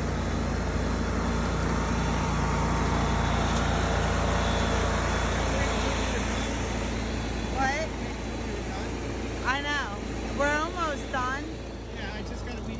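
Commercial ride-on lawn mower's engine running steadily at an even pitch, easing slightly after the middle. Several short rising-and-falling calls come through near the end.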